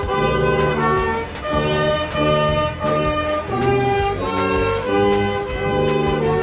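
Live brass band playing a tune, trumpet-like melody over a low brass bass line, in short held notes that change every half second or so.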